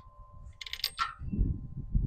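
Light metallic clinks of an Allen key and a steel tank-mounting bolt being handled: a short ringing cluster of clinks just after half a second in, and another clink at the very end, over low rumbling handling noise.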